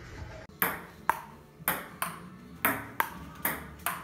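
Table-tennis ball clicking back and forth off the paddle and table: about eight sharp hits, roughly two a second, starting about half a second in.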